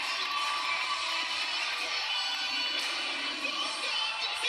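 A competitive cheerleading routine's music mix playing with a crowd cheering over it, thin-sounding with almost no bass.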